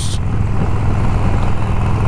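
Motorcycle engine running steadily while riding at road speed, with wind and road noise over it.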